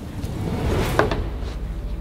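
A door being opened: a short rising rush and a sharp latch click about a second in, over a low steady rumble.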